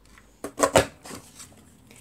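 Stampin' Up Tag Topper hand punch pressed down through embossed cardstock: two sharp clunks about a fifth of a second apart, a little over half a second in, then faint rustling as the card and punch are handled.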